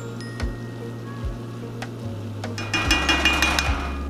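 Background instrumental music with steady low bass notes and soft drum beats. A brighter chord comes in near the end.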